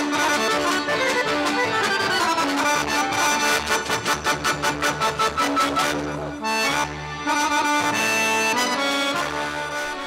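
Accordion playing lively Serbian folk dance music, the kolo, with a fast, even beat.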